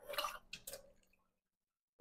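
Faint handling sounds of a plastic water bottle: a few soft, short clicks and squishes within the first second, then silence.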